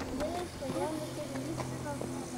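Quiet, indistinct voices murmuring over a steady low hum.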